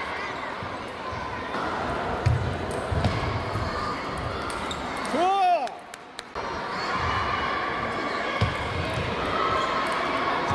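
Table tennis play in a large hall: faint clicks of the celluloid ball under the steady chatter of many people, with dull low thuds on the floor a few times. A short rising-and-falling voice cuts through about five seconds in.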